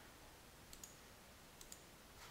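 Near silence with four faint clicks in two quick pairs, about a second apart.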